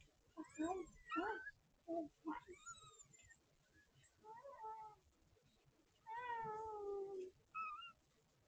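Cat meowing: a quick run of short meows rising and falling in pitch over the first few seconds, a lone meow midway, then one longer meow that slowly falls in pitch and a short final one near the end.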